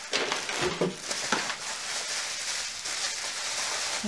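Steady rustling of packaging as items are rummaged out of a box, with a few light knocks in the first second and a half.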